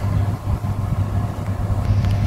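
Floor-standing air conditioner's indoor unit running: a steady low hum with a rush of fan noise.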